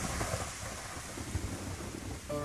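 Thunderstorm: steady rain with a low rolling rumble of thunder.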